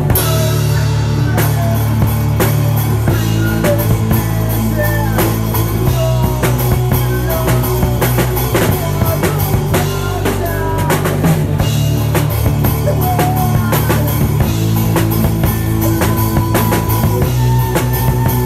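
Post-hardcore rock band playing loud: drum kit with bass drum, snare and cymbals driving a steady beat under electric guitars, heard close to the drums.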